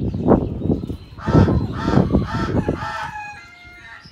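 White-cheeked turaco calling: a loud run of rapid, guttural notes that swells into a few harsher, honking notes about a second in, then trails off into fainter drawn-out notes near the end.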